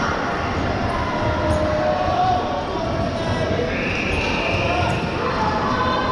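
Dodgeballs bouncing and striking on an indoor court, with a few sharp knocks, over the steady shouting and chatter of players and spectators in a large sports hall.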